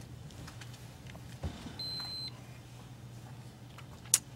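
A single short, high-pitched electronic beep, one steady tone lasting about half a second, about two seconds in, over quiet room tone with a low hum.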